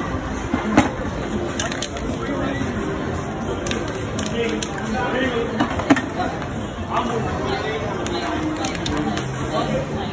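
Aerosol spray-paint cans hissing now and then, under background chatter, with two sharp clicks, about a second in and near six seconds.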